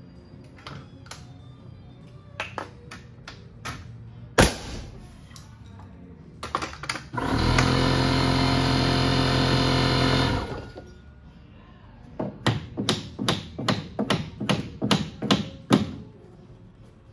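Hammer knocking on wood framing lumber, with one heavy blow. A power tool's motor then runs steadily for about three seconds, followed by a fast series of hammer strikes, about three or four a second.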